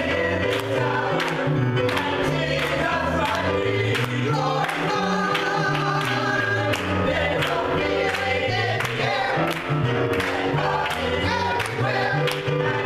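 A small gospel choir singing together with keyboard and electric guitar accompaniment, over a steady beat of sharp strikes.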